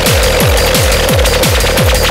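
Fast techno: a rapid kick drum about four to five beats a second, each kick a short downward-sweeping thud, under a steady held synth tone and hissing cymbals.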